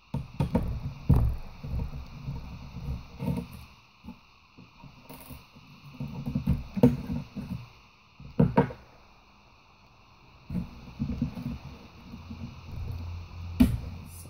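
Hands and a screwdriver working a laptop hard drive free of its plastic chassis: scattered clicks, scrapes and knocks of metal and plastic, with a few sharper knocks, one about a second in and others about 7, 8½ and 13½ seconds in.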